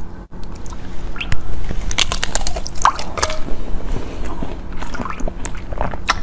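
Frozen ice being bitten and chewed close to the microphone: scattered sharp cracks and crunches over a steady low hum.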